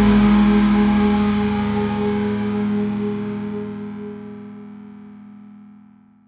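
Final chord of a metal song on distorted electric guitar, left ringing out and fading away steadily over about six seconds until it dies out near the end.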